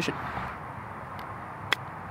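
A single sharp click of a very old, thin-bladed putter striking a golf ball on a chip shot, about three-quarters of the way in, over steady outdoor background noise.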